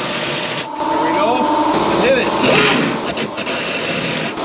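Impact wrench hammering in one long steady run, tightening down the lower bolt of a rear shock absorber.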